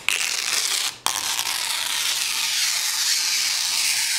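Protective plastic film being peeled off the face of an LED light bar: a steady crackling tear, broken briefly about a second in, then running on.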